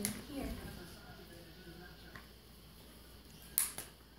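A short, sharp crackle near the end from a paper gift bag being handled while a dog noses into it, after a mostly quiet stretch with a faint click.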